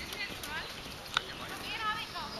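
Open-air background of faint, indistinct voices and short high chirps, with a single sharp click about a second in.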